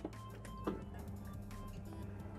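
Quiet background music with thin steady tones, and two soft knocks, one at the start and one under a second in.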